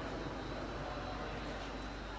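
Steady background hiss and low hum of a large sports hall's room tone, with no distinct sound standing out.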